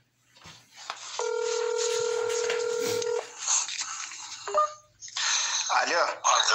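Recorded phone call played back through a phone's speaker: one long ringback tone of about two seconds over a steady hiss, then a short beep as the call connects and a voice starts near the end.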